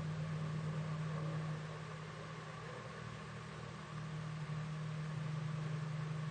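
Steady low hum with hiss from an old tape recording, no speech; the hum dips briefly in the middle and comes back.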